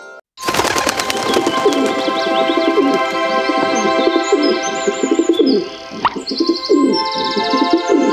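Background music with bird calls, cooing and chirping, over it. The sound starts after a brief silence, and a short laugh comes about six seconds in.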